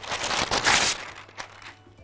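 A sheet of baking parchment (butter paper) being handled and rustled. The paper noise is loudest about half a second in, then fades out over the next second.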